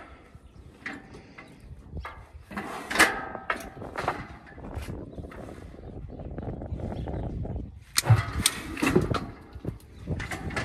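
Steel cattle squeeze chute clanking and rattling as a cow shifts inside it, with sharp metal strikes about three seconds in and again near eight seconds, and lower rattling noise in between.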